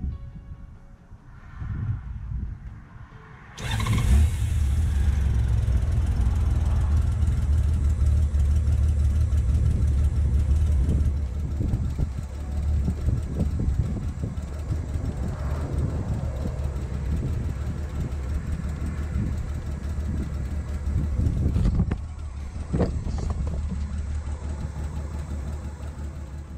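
Honda GL1500 Gold Wing's flat-six engine starting about three and a half seconds in and then running at a steady idle, on fuel fed through the freshly rebuilt petcock.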